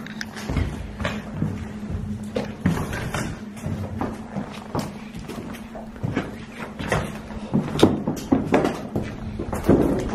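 Irregular footsteps, knocks and crunches of people walking over debris and loose boards on a littered floor, a little louder and denser near the end.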